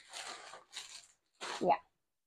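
Packaging of a set of press-on nails rustling and crinkling as it is handled, in a few short bursts, followed by a brief spoken "yeah" near the end.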